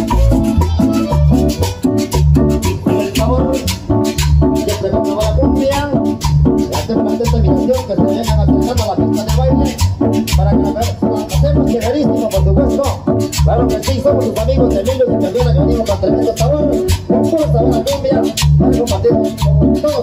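Chanchona band music with a steady, evenly repeating bass beat, a rattle keeping time and a melody line over it.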